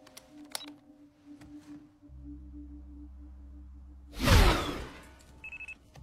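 A low steady drone, then about four seconds in a sudden loud whoosh of something speeding past, falling in pitch as it goes. Just after it, a handheld radar speed gun beeps several times in quick succession at one high pitch.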